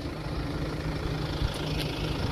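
A vehicle engine idling with a steady low hum, under an uneven low rumble.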